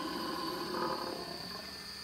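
Animatronic Halloween ghoul prop playing its growling, roaring sound effect through its built-in speaker.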